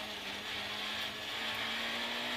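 Peugeot 106 rally car's engine heard from inside the cabin, pulling in third gear with a steady note under road and wind hiss; the pitch begins to climb slightly near the end.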